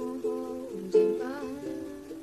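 Ukulele strummed in chords, with a girl's voice singing softly over it; a strong new strum comes about a second in.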